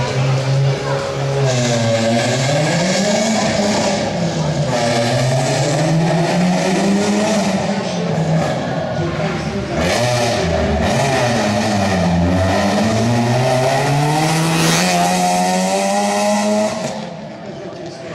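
Rally car engine revving hard, its pitch climbing and dropping several times as it accelerates and lifts off, then dying away near the end.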